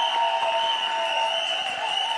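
Music with long held tones, over a crowd of guests clapping and cheering.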